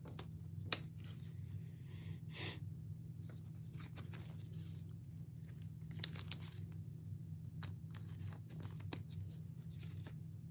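Light plastic rustling and scattered sharp clicks of trading cards being handled in clear plastic sleeves and rigid toploaders, over a steady low hum.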